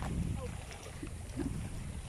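Steady low rumble of wind on the microphone by the sea, with faint short snatches of distant voices.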